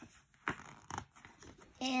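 Paper pages of a children's picture book being handled and turned: two short rustles about half a second and a second in. A child's voice starts near the end.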